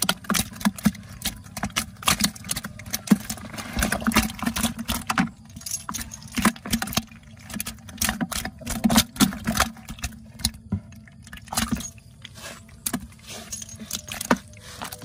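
Live freshwater fish flapping and thrashing in a container, with quick irregular slaps, knocks and rattles as they strike each other and the container's sides.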